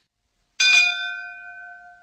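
A brass ship's bell struck once, about half a second in, then ringing on with several clear tones that slowly fade away.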